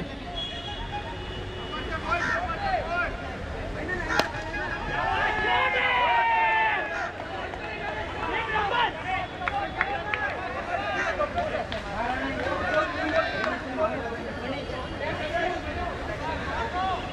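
Indistinct voices of several people talking and calling out in the open, loudest about five to seven seconds in, with a single sharp click about four seconds in.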